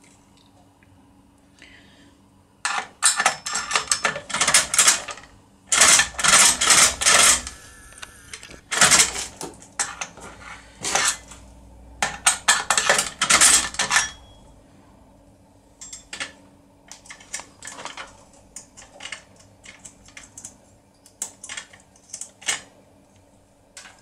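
Metallic clicking and scraping from a lever-lock impression pick being worked in the keyhole of a CR 6+6 lever mortise lock, the steel tool clicking against the lock's levers. The clicks come in dense runs of a second or two through the first half, then turn sparser and lighter.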